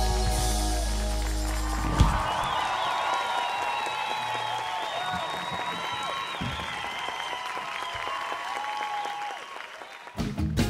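A live band holds its final chord and cuts it off with a hit about two seconds in. The audience then applauds and cheers, with whistles over the clapping, fading out near the end.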